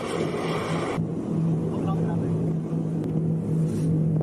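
A boat's engine running with a steady hum, under rushing water and wind noise; the hiss thins about a second in.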